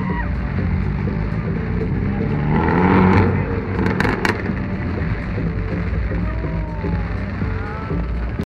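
BMW E30's engine running and revving as the car drives a cone slalom on wet tarmac, swelling loudest about three seconds in.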